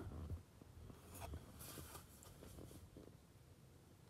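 Near silence: room tone with a few faint small ticks and rustles.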